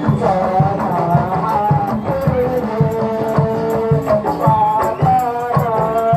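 Live Bantengan accompaniment: a reedy terompet (shawm) melody holding long notes over a steady drum beat.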